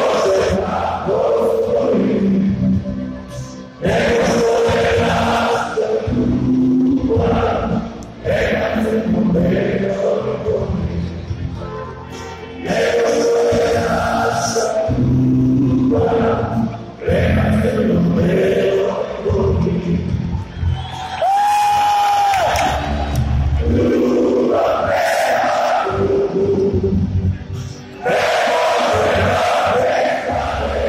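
A large arena crowd of Partizan basketball fans singing and chanting together, loud, in long phrases with short breaks between them. About two-thirds of the way through, a brief high steady tone sounds once.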